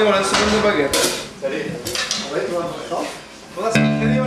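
Scattered clinks and knocks with a murmur of voices in a small live-music room, then, near the end, an electric guitar suddenly comes in with a sustained ringing chord as the band starts the next song.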